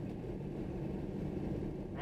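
A car driving on a highway, heard from inside the cabin: a steady low rumble of engine and road noise.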